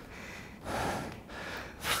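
A person breathing hard from the exertion of a strenuous bodyweight yoga move: two heavy breaths, the second and louder one near the end.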